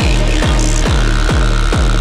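Techno from a vinyl DJ mix: a steady four-on-the-floor kick drum at about 138 beats a minute, each hit dropping in pitch into deep bass, with hi-hats on top and a thin high tone held through the second half.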